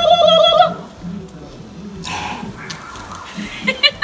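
A person's voice holding a long, high, sung-out note during the first second, then quieter outdoor background.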